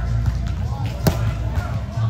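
A volleyball struck once by hand about a second in, a single sharp slap of a serve or hit, over background music and chatter in a large hall.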